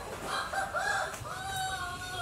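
A rooster crowing once: two short notes, then one long drawn-out note through the second half.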